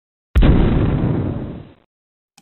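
Intro sound effect: a single explosion-like boom that starts suddenly with a sharp crack about a third of a second in and dies away over about a second and a half.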